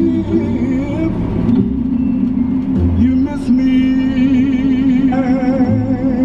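A song playing over a car stereo: a sung vocal line with wavering held notes over a steady bass, with the car's road noise beneath.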